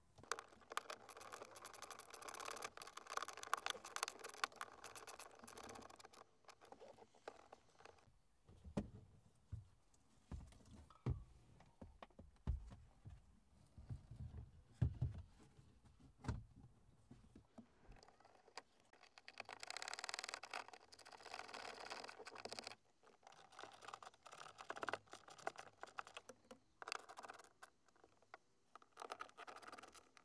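Faint handling sounds of plastic dashboard trim and the gauge cluster being fitted back into place: stretches of scraping and rustling, with scattered clicks and light knocks in between.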